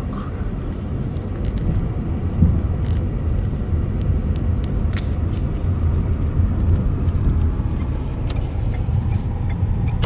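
Steady low rumble of a car being driven slowly, heard from inside the cabin, with a few faint clicks.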